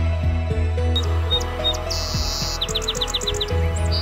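Song sparrow singing: a few clear introductory notes, a buzzy note, then a quick trill of about eight notes, over soft background music.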